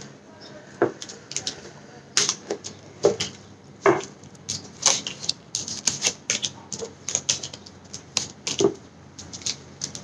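Tarot cards being gathered, shuffled and laid down on a table: an irregular run of sharp clicks and taps, a few a second.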